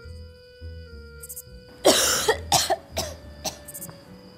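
A sick woman coughing, a fit of about four coughs starting about two seconds in, the first the loudest and longest, over soft background music.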